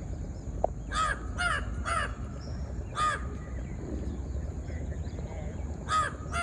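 A crow cawing: three caws in quick succession about a second in, a fourth about a second later, and another near the end.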